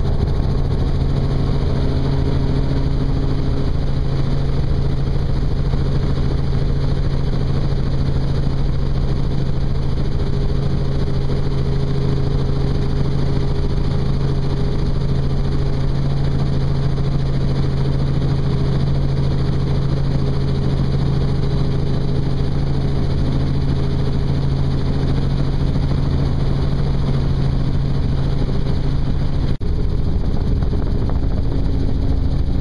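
Helicopter cabin noise with the doors off: the steady drone of the rotor and engine under a rush of wind. It dips briefly just before the end.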